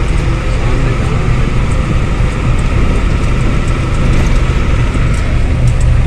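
Loaded goods truck's engine running steadily at cruising speed, with road and wind noise. It is heard from inside the cab as a continuous low rumble.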